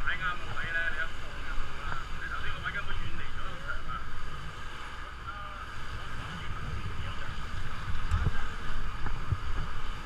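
Wind buffeting the microphone on an open boat at sea, a gusty low rumble, with faint indistinct voices in the background.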